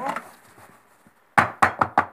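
Wooden-boxed silicone loaf mold of freshly poured cold-process soap rapped against the countertop in a quick run of sharp knocks, starting about a second and a half in. The tapping drives trapped air out of the soap so the bar will not crack or keep air pockets.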